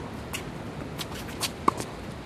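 A tennis ball is struck by a racquet once, a sharp pop about three-quarters of the way in, during a baseline rally. Between hits, shoes scuff faintly on the hard court.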